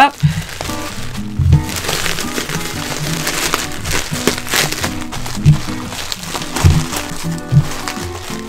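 Plastic bubble wrap crinkling and rustling as it is folded by hand around a paper-wrapped glass bowl, over background music.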